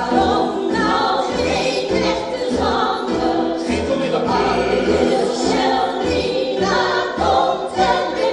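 A song from a stage musical: a group of voices singing together over instrumental backing with a pulsing bass line.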